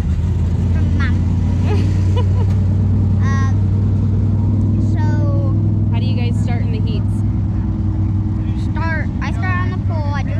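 A steady, loud low engine drone runs without a break, with scattered voices over it.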